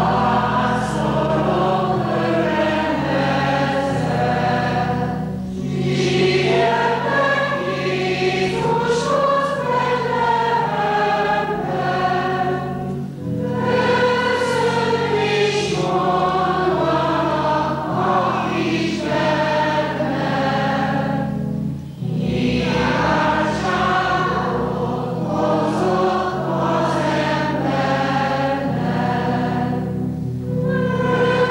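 A school chamber choir singing in long phrases, with three short breaks for breath between them.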